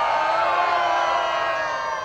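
Large audience cheering and whooping on cue, many voices together, easing off slightly toward the end.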